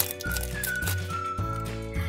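Upbeat background music: a high, whistle-like lead melody stepping down over bass notes on a steady beat.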